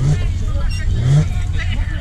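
Background voices of several people chatting, untranscribed, over a steady low rumble.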